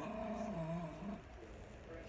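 A dog vocalising faintly off to one side: one low, drawn-out call over about the first second, fading out after that.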